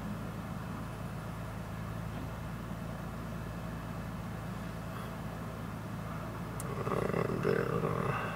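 Steady low hum inside a parked car's cabin, with a brief louder mid-pitched sound near the end.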